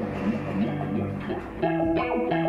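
Electric guitar played through an Old Blood Noise Endeavors Reflector V3 chorus pedal in its Mirrors mode, with the rate at maximum. The chorus warbles fast while the resonant filter sweeps at its fastest speed, a quarter of the chorus rate. New notes are struck about a second and a half in.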